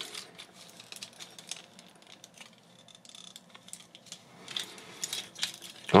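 Small plastic clicks and light rattling from the parts of a Transformers MP-47 Hound figure being handled, folded and pegged together, with clusters of clicks about a second in and again near the end.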